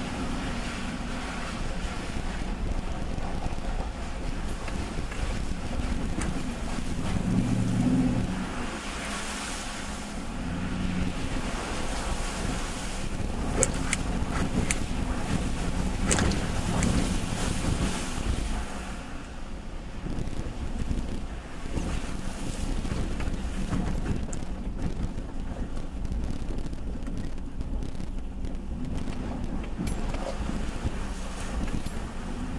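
Nissan Titan pickup creeping through shallow flowing water and rocks, heard from inside the cab: a steady low engine hum under the wash of tires moving through water and gravel. The engine swells briefly about a quarter of the way in, and a few sharp clicks come near the middle.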